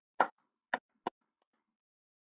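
A man clapping his hands: three short claps within about a second, the first the loudest.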